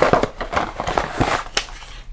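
Cardboard smartphone retail box being opened and handled: rustling, scraping and small clicks of the packaging as the phone is slid out.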